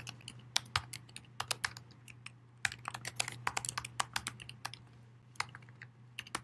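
Typing on a computer keyboard: quick irregular runs of key clicks with short pauses, over a faint steady low hum.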